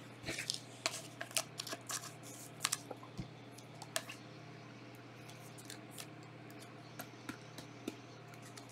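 Trading cards being flipped and slid against each other by hand: a run of soft clicks and flicks of card stock, frequent in the first half and sparser toward the end, over a faint steady hum.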